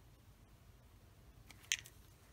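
Mostly quiet room tone, with one short, sharp click near the end as a small plastic ink dropper bottle is handled.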